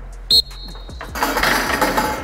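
A linebacker strikes a one-man blocking sled: a sharp hit about a third of a second in with a brief high ring after it, then a rush of noise near the end as the rep is finished.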